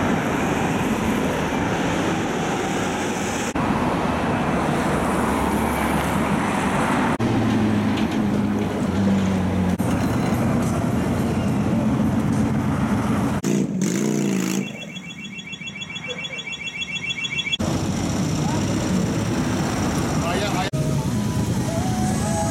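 Outdoor crowd chatter and motorcycle engines running, across several cut-together shots. About two-thirds of the way through, a short stretch of repeating electronic beeping stands out over a quieter background.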